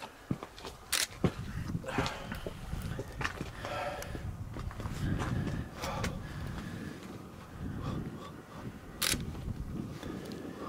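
Wind buffeting the microphone as an uneven low rumble that swells and fades, with a few sharp clicks, about a second in and again near the end.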